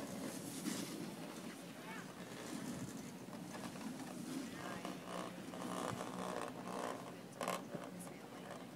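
Ski-slope outdoor ambience: faint, indistinct voices and handling noise close to the microphone, with a brief louder noise about seven and a half seconds in.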